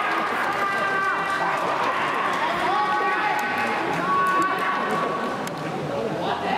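Several young soccer players shouting and calling out on the pitch, some shouts held long and then falling, echoing under a large indoor dome. The shouts run into a team cheering a goal, with a few sharp clicks of kicks or footsteps among them.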